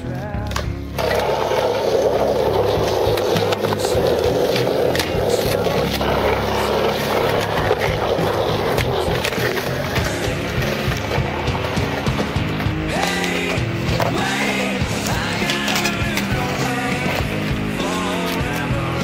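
Skateboard wheels rolling over concrete, a steady gritty rumble with a few sharp clacks of the board. It starts about a second in and stops a little past the middle, over background rock music. Singing in the music comes forward near the end.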